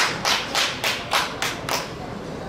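A run of sharp hand claps, about three a second, ringing in a large hall, stopping near the end.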